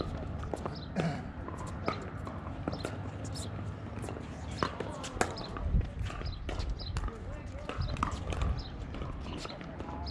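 Pickleball paddles striking a hard plastic ball, sharp pops coming at uneven intervals through a rally, with a few low rumbles and voices in the background.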